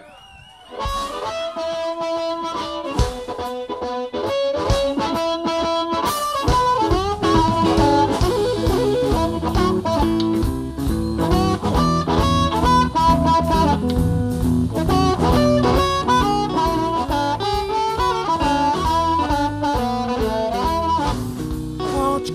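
Live blues band playing an instrumental intro led by a harmonica cupped to a vocal microphone, with electric guitar. It starts about a second in, and the bass and drums join about six seconds in.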